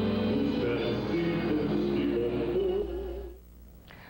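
Live stage performance of a gaúcho milonga by a male singer with his band, with sustained notes; the music fades out about three seconds in.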